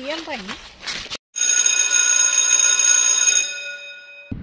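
A woman's singing voice breaks off about a second in. After a moment of silence a bell rings steadily for about two seconds, then fades away.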